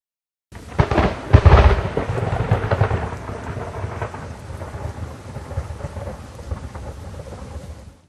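Thunder-and-rain sound effect: a sudden crackling thunderclap about a second in, the loudest part, then a rumble with rain that slowly fades and cuts off abruptly at the end.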